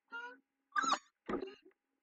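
Three short vocal calls in quick succession, each about a third of a second long and gliding in pitch.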